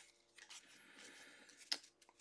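Near silence with faint handling of a stack of trading cards, and one brief click near the end.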